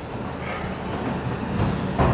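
Steady low rumble with an even hiss, slowly growing louder.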